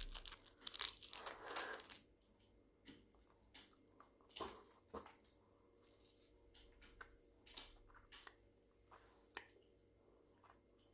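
Crinkling of a sweet wrapper being undone for about the first two seconds, then faint, scattered clicks and crunches of a Napoléon fruit hard candy being eaten.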